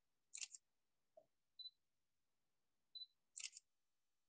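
Camera shutters firing twice, about three seconds apart, each a quick double click, with short high beeps between them, against near silence.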